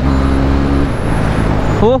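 KTM Duke 390 single-cylinder engine under way at speed with its exhaust silencer removed, a steady engine note that falls away about a second in as the throttle closes, leaving wind and road rush.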